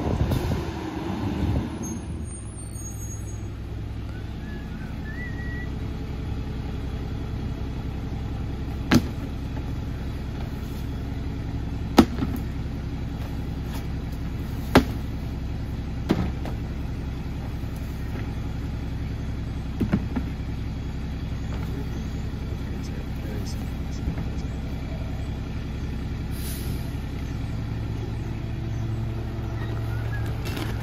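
Rear-loader garbage truck's diesel engine idling steadily while plastic bins are emptied into its hopper, each knocked against the hopper edge: five sharp knocks, about 9, 12, 15, 16 and 20 seconds in. The engine note grows heavier near the end.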